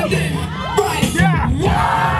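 Crowd of spectators shouting and whooping over loud dance music with a steady bass beat, with one loud yell about a second in.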